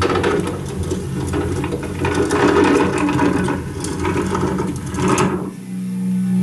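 Dense rustling and scratching in straw and wood-shaving bedding as a small pet animal moves about, over a steady low hum. It stops about five and a half seconds in.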